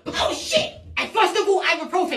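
A man's voice: a short breathy vocal burst in the first second, then talking.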